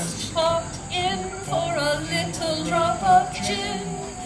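A woman singing a melody with a live acoustic band, with acoustic guitar among the instruments.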